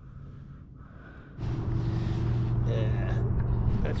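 A boat's motor running: it turns over quietly at first, then gets abruptly louder about a second and a half in and holds a steady, low drone.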